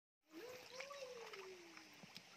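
A faint, drawn-out cry that rises in pitch and then slides slowly down for over a second, over a few light splashes and trickles of water.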